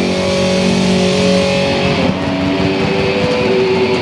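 Loud distorted electric guitar droning on sustained notes and feedback between songs, with the held pitch changing about two seconds in.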